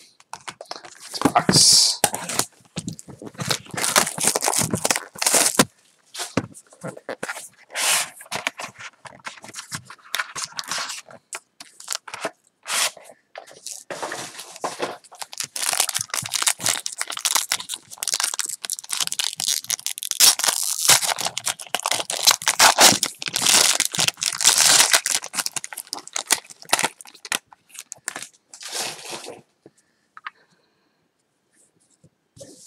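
Plastic wrap on a sealed box of trading cards crinkling and being torn off by hand, with many sharp clicks and rustles of handling.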